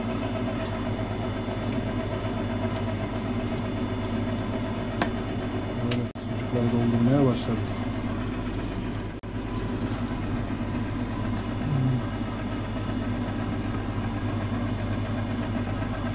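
Electric meat grinder's motor running steadily with a low hum as it auger-feeds a stiff, spiced sucuk mix through the stuffing tube into a sausage casing.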